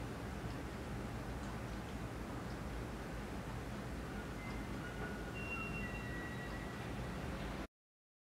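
Quiet room tone: a steady low hum and hiss, with a few faint, brief high tones in the second half. The sound cuts off suddenly near the end.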